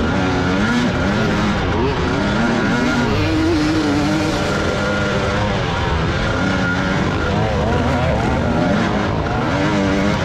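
Two-stroke engine of a Husqvarna TE300 dirt bike, revving up and down over and over as it is ridden hard on a rough trail.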